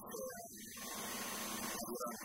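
A man's speech stops briefly, then a steady hiss over a low electrical hum fills the pause until he starts talking again.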